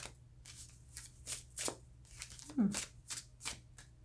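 A deck of tarot cards being shuffled by hand, in a string of short, quick strokes spaced unevenly across the few seconds.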